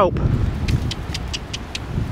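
Wind buffeting the microphone, a low rumble, with a short run of faint crisp ticks about a second in.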